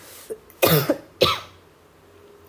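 A person coughing twice in quick succession: a longer cough a little over half a second in, then a shorter one about half a second later.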